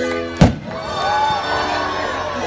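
A firework shell bursting overhead with one sharp bang about half a second in, over music playing throughout.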